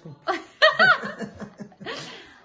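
A woman laughing: a few short bursts of laughter about half a second in, trailing off into softer, breathy laughter.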